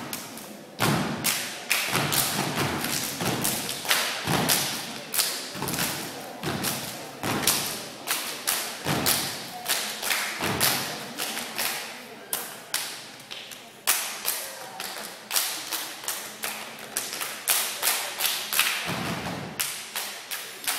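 A step team stepping: rhythmic stomps and body-percussion hits, several strikes a second in a shifting, syncopated pattern.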